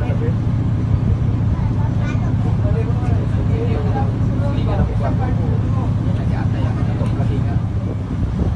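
Engine of a roll-on/roll-off ferry running with a steady low hum, while people talk in the background.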